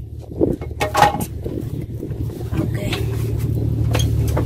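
A boat's engine running: a low, steady hum that grows louder over the last couple of seconds.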